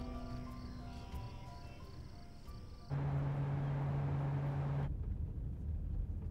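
Drama soundtrack melody fading out over the first three seconds. Then a sudden steady low drone with hiss for about two seconds, giving way to the low rumble of a car cabin on the road.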